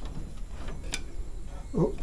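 Quiet handling at a workbench vise, with one sharp click about a second in and a few fainter ticks over a low steady hum. A voice says "oh" near the end.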